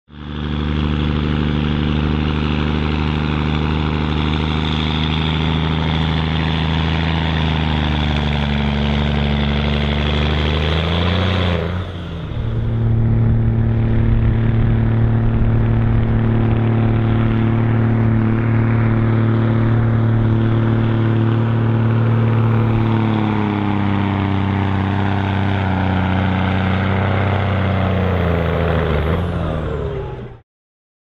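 Scania 114 truck's 11-litre six-cylinder diesel pulling a weight-transfer sledge under heavy load. It runs at high, steady revs that sag and fall in pitch several times as the sledge's load builds. The sound changes abruptly about 12 seconds in.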